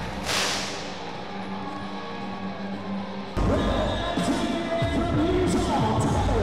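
Arena pyrotechnic flame projectors fire with a short whoosh just after the start, over music playing through the arena sound system. About three seconds in the music jumps louder and busier.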